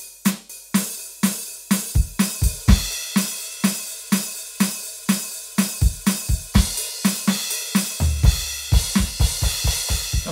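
Roland TD-17 electronic drum kit played as a steady groove, about three kick and snare hits a second. Cymbals and hi-hat come in about three seconds in, and the low end grows heavier from about eight seconds.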